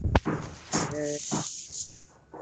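A voice over a video-call link slowly sounding out a short syllable of Quranic Arabic, among breathy noise, with a sharp click just after the start.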